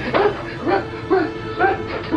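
Dog barking in short, evenly spaced barks, about two a second, over background music.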